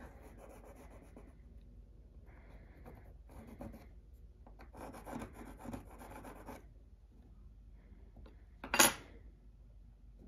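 A pencil scratching on wood as it traces around a steel knife blank held on a mahogany block, in several separate strokes. Just before the end comes a single sharp clack, the loudest sound.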